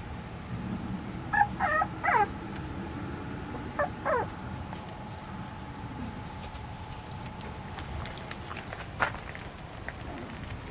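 A puppy whimpering in short, high calls that slide in pitch: a cluster of three about a second and a half in, then two more around four seconds.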